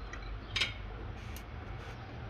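A fork and knife working on a plate, with one short clink of metal on the plate a little over half a second in and a few faint ticks, over a low steady background rumble.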